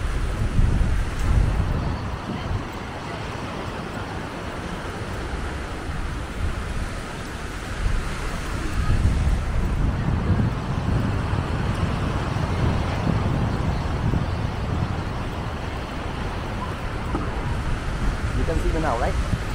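Wind buffeting the microphone in gusts, a fluttering rumble over a steady hiss of outdoor noise; the gusts are strongest in the first couple of seconds and again about nine seconds in.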